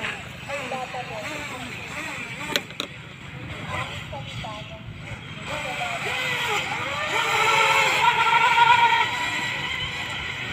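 RC speedboat's electric motor running at speed across the water: a high-pitched whine that builds from about six seconds in and is loudest just before the end, then eases.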